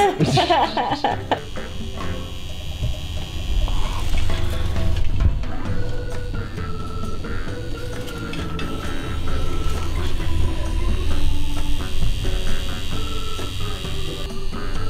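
Background music with a deep bass line and a simple stepping melody; a short laugh in the first second or so.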